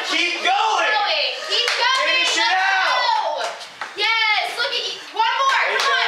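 Mostly speech: girls' voices talking and calling out over each other, with a few hand claps mixed in.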